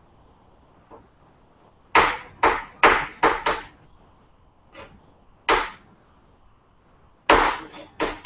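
Kitchen knife chopping almonds on a plastic cutting board: a burst of about five quick chops about two seconds in, then a few single chops spaced out.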